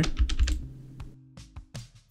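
A run of clicks from a computer keyboard and mouse, most in the first second and a couple more near the end, over quiet background music.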